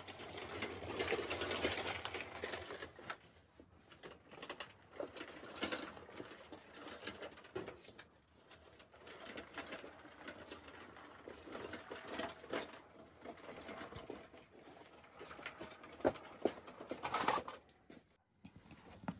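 A riding mower pushed by hand with its engine off: knobby tyres rolling over concrete and the frame rattling, strongest in the first few seconds, then scattered knocks, clatters and footsteps.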